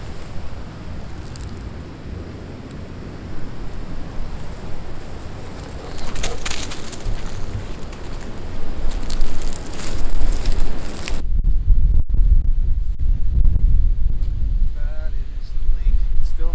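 Strong wind, first rushing through the surroundings with a few brief crackles, then, about eleven seconds in, turning into heavy low buffeting of wind on the microphone at an open, windswept lake shore. Faint wavering pitched calls come near the end.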